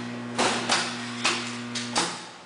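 Energized electric motor stator giving a steady electrical hum, with four sharp metallic clinks as the loose rotor bars are forced across in their slots; the hum cuts off suddenly at the end when the stator is de-energized.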